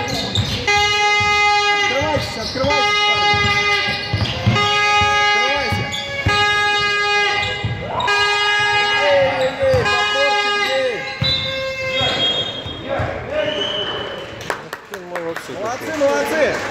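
A horn sounding in a string of short blasts at one steady pitch, about one every second and a half, stopping about eleven seconds in. A basketball bounces on a hardwood gym floor between the blasts.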